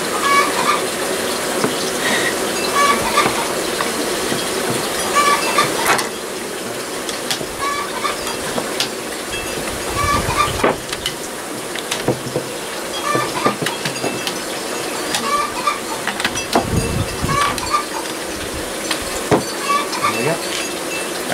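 Honeybee colony humming steadily around its opened comb, with a hen clucking again and again in the background and a few knocks from handling.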